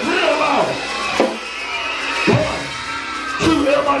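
Live band music with drum hits and a voice singing or calling over it. The bass thins out in the middle and comes back in full near the end.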